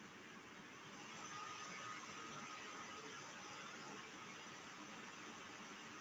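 Faint steady background hiss of room tone, with a thin faint tone about a second in.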